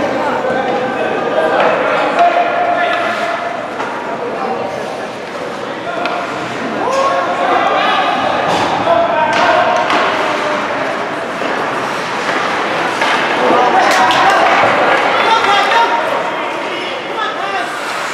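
Echoing voices in an indoor ice rink during a hockey game, with several sharp knocks of sticks and puck against the ice and boards.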